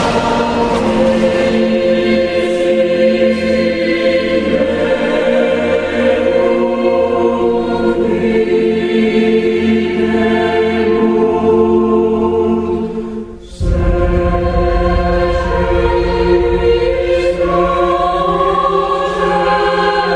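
Choral film score: a choir holding long sustained notes over music. About two-thirds of the way through it briefly drops away, then comes back with a heavy deep bass underneath.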